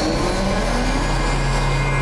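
Animated energy-weapon sound effect of a spirit-energy cannon charging: a rising whine over a loud rushing hiss that settles into a steady low hum about a second and a half in.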